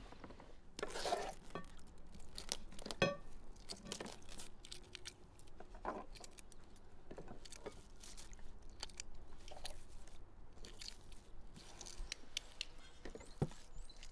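Close-up food-preparation handling sounds: scattered small clicks and crackles, including boiled eggshells crackling as they are peeled by hand. About three seconds in there is a sharp clink with a short ring, like a glass bowl being knocked.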